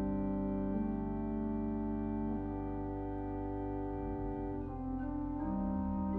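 Organ playing slow, held chords over sustained bass notes, the harmony shifting every second or so.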